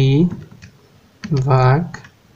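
Plastic keys of a Casio fx-991EX ClassWiz scientific calculator being pressed one at a time: a few short, separate clicks as an expression is keyed in.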